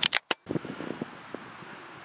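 Handheld camera being handled: a few sharp clicks with a brief dropout in the sound near the start, then faint scattered ticks over low outdoor background noise.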